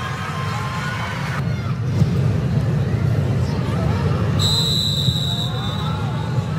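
Broadcast ambience of a soccer match in a near-empty stadium: a steady low rumble with faint distant shouts from players on the pitch. A little past the middle, a high steady whistle tone sounds for about a second.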